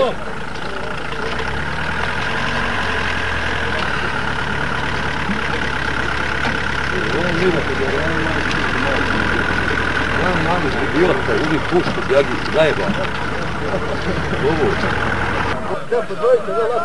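An engine running steadily with a low hum, and men's voices faintly over it in the second half. The engine sound cuts off abruptly just before the end.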